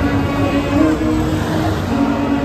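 Cars of a motorcade rolling slowly past at close range, their engines running with a steady low hum.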